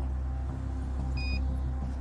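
Steady low hum of an idling vehicle engine, with one short electronic beep just over a second in from a handheld breathalyser finishing its analysis of a breath sample.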